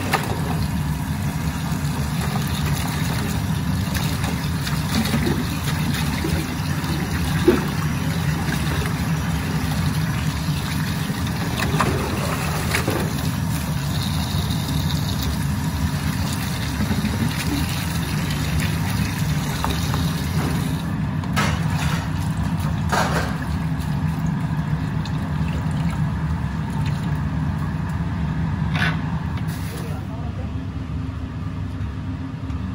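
Tap water running and splashing into a stainless steel sink as cooked noodles are rinsed and worked by hand in plastic colanders, with a few light knocks of the colanders. The splashing thins out about two-thirds of the way through.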